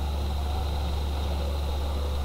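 A steady low hum with a faint hiss above it, unchanging throughout: the background noise of an old film soundtrack.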